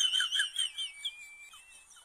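High-pitched warbling whistle that wavers up and down several times a second, then settles into a thin steady tone that fades out.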